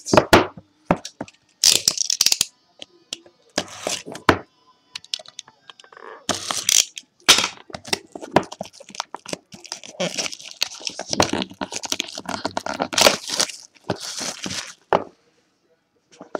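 A sealed trading-card box being torn open by hand: plastic wrap and packaging crackle and tear in irregular bursts with short pauses.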